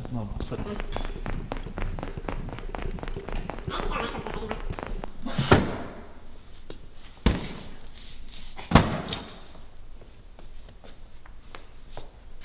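Handling noise and footsteps as a hand-held camera is carried across a concrete floor: many quick clicks and scuffs, with three loud thumps about five and a half, seven and nine seconds in.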